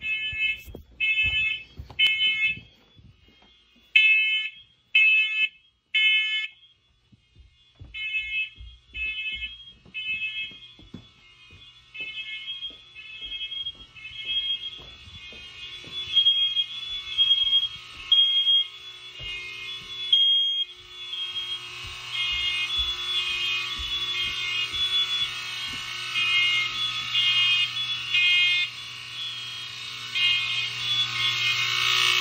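Several hardwired smoke alarms going off. First one alarm beeps in groups of three, and then more alarms join out of step until the beeps pile up into a continuous din. The modern alarms are triggered as power reaches a line they share with an old FireX FX-1020, whose constant voltage on the interconnect wire they take as an alarm signal.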